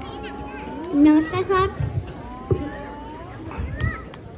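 Children's voices in an outdoor school yard, with one child's voice rising loud and wavering about a second in over lighter chatter.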